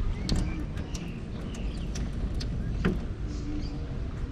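A few sharp clicks and knocks of handling at a stainless steel sink and its tap, with no water flowing because the supply is off, over a steady low rumble.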